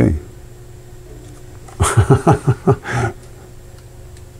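A man laughing: a run of about six short bursts of laughter about two seconds in.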